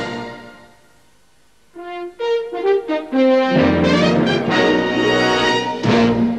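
Cartoon theme music fading out, then a brass fanfare: a few separate notes stepping along, swelling about halfway in into a full, held orchestral brass chord for the episode's title.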